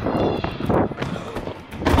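Rustling and scuffing movement noise, with a sharp thump just before the end.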